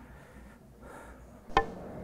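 Snooker cue tip striking the cue ball once, a single sharp click about one and a half seconds in, after quiet room tone.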